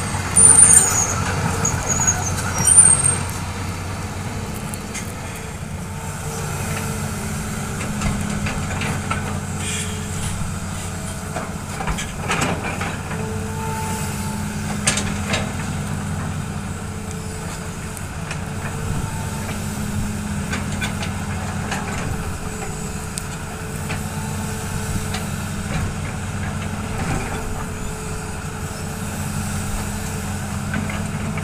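Hitachi hydraulic excavator's diesel engine running steadily while it digs, its note strengthening about every six seconds as the boom and bucket work under load, with occasional knocks of the bucket in the soil. A couple of loud high squeals sound in the first three seconds.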